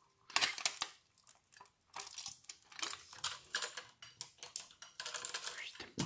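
Irregular small metallic clicks and rattles from a die-cast Siku Brantner three-axle tipper trailer model being handled, as the chain and pin that lock the tipping body are released on its far side. A few clicks come at the start, then a short pause, then a run of uneven clicking.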